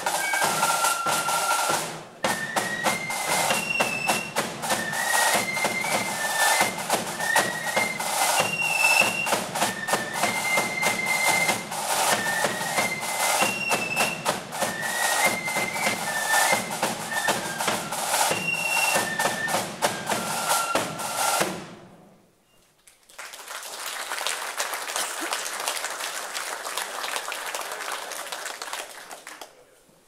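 Marching flute band playing a brisk tune, the flutes carrying a quick melody over a dense beat of snare and bass drums. The tune stops about two-thirds of the way through, and after a short pause a few seconds of steady, even rattling noise without any tune follow and fade out near the end.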